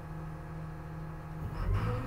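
Cat RM400 reclaimer/stabilizer running with a steady low machine hum. About one and a half seconds in, the hum rises and changes pitch as the hydraulics start raising the rotor door.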